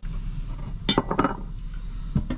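Dishes being handled at a metal sink: a ceramic bowl and metal pots knocking together, with a few sharp clinks about a second in, over a steady low hum.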